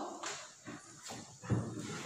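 Chalk knocking and scraping on a blackboard as a word is finished, a few faint knocks, then a heavier thump about one and a half seconds in.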